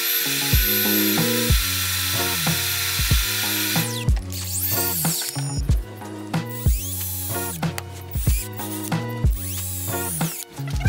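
Music with a steady beat over power-tool work: a table saw cutting a board for about the first four seconds, then a drill with a countersink bit boring into a wooden slat in short runs.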